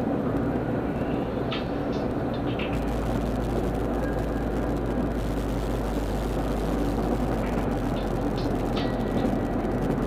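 Steady road and engine noise of a car cruising on a freeway, heard from inside the car as an even low rumble. A few faint, brief high squeaks come through near the start and again near the end.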